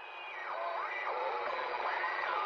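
Tinny, narrow-band audio as if heard through a small old radio or TV speaker, with whistling pitches that glide up and down. It swells in and then holds steady.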